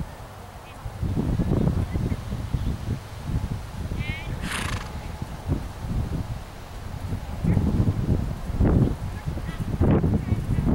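Wind buffeting the microphone in uneven gusts of low rumble. About four seconds in, a short high honk-like call is followed by a brief hiss.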